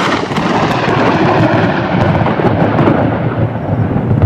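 Loud, continuous rumble of thunder.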